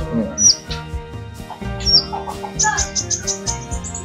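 Male kolibri ninja (sunbird) calling: single high down-slurred chips about half a second in and again near two seconds, then a fast run of high twittering notes from a little past halfway.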